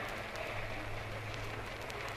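Steady low hum and hiss of an old archival recording, with a few faint ticks of crackle, in a pause between spoken phrases.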